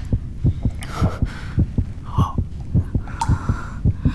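Heartbeat sound effect: low, fast, regular thumps, several a second, marking a romantic near-kiss moment.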